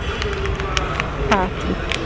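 Plastic-wrapped snack cakes crinkling and clicking in a hand as they are moved into a wire shopping cart, over a low steady supermarket background rumble.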